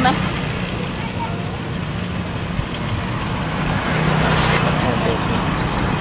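Street traffic with a steady low engine hum, and faint voices in the background.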